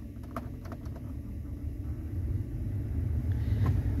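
Ford SUV's climate-control blower pushing air from the dash vents, the rush of air growing steadily louder as the fan is turned up to full. A few light clicks sound in the first second.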